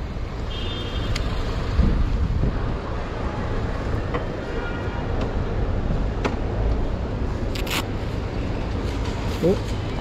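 Steady low rumble of idling vehicle engines and curbside traffic, with a few sharp clicks scattered through it.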